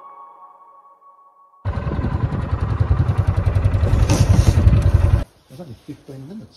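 Background music dies away on a single lingering tone. About a second and a half in, a loud, rough rumbling noise starts abruptly and lasts about three and a half seconds, then cuts off suddenly.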